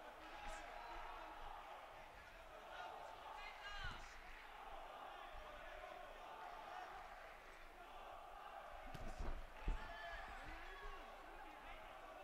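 Quiet boxing-arena ambience: a low murmur with a voice calling out about three to four seconds in, and a few dull thuds from the ring, the loudest about ten seconds in.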